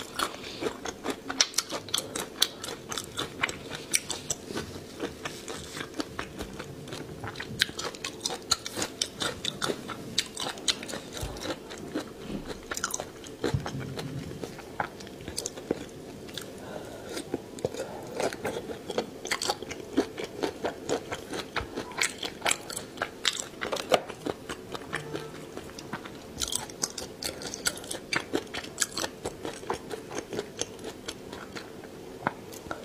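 Close-miked mouth sounds of a person biting and chewing sauce-coated food from a skewer: irregular wet clicks, smacks and crunches, several a second, over a faint steady hum.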